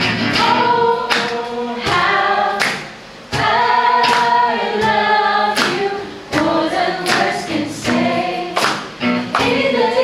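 A worship team of two women and a man singing a worship song together into microphones, accompanied by a strummed acoustic guitar. The singing breaks off briefly about three seconds in.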